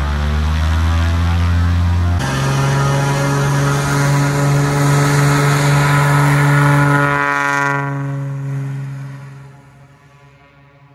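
Light single-engine piston bush plane running at high power with its propeller turning, a loud steady drone. The drone fades away over the last two seconds or so as the plane departs.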